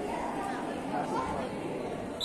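Indistinct chatter of spectators' voices in an indoor sports hall, steady and moderately quiet.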